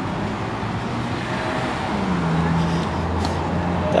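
Street traffic noise with the low hum of a motor vehicle's engine, its pitch dipping briefly about two seconds in.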